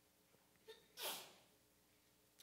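A man's quick breath in at a close microphone about a second in, just after a faint mouth click; otherwise near silence.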